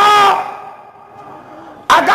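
A man's drawn-out, impassioned cry of "Ae Allah" through a microphone, held for about half a second and then fading away; near the end he starts shouting again.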